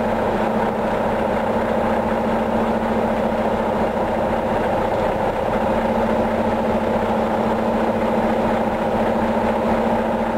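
Semi-truck diesel engine running steadily at low speed, a constant even drone with no change in pitch.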